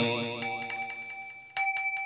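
Two bell strokes ring out as a man's chanting voice fades: a light, high stroke less than half a second in, then a louder stroke about a second and a half in that rings on with a steady tone.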